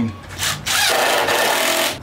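Power drill boring a pilot hole to fasten the antlers down onto the mannequin, with a loud, even grinding noise. It starts about two-thirds of a second in and stops just before the end.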